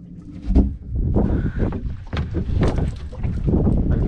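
Wind buffeting the microphone aboard a small open skiff, with knocks and thumps against the boat's hull; the loudest is a low thump about half a second in.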